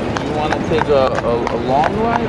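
Carriage horse's hooves clip-clopping in a steady rhythm on an asphalt road, with voices talking over them.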